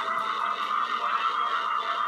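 Metal recording near its close: a dense, steady wash of distorted electric guitar with little bass underneath.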